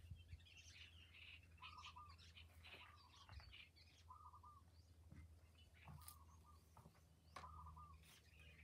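Faint birdsong: one bird repeats a short call every second or so while others chirp higher, over a low steady hum, with two faint sharp clicks in the second half.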